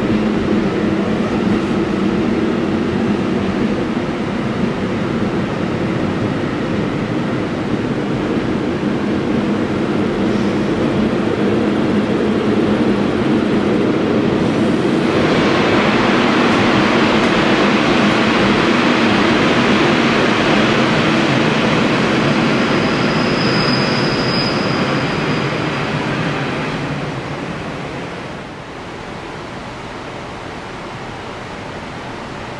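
Freight train of car-carrier wagons rolling past: a steady rumble of wheels on the rails, turning louder and hissier about halfway through. A brief high squeal sounds a few seconds before the end, then the sound fades as the last wagons go by.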